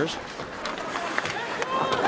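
Ice hockey arena sound during live play: a steady crowd hum with a few sharp clicks of sticks and puck on the ice.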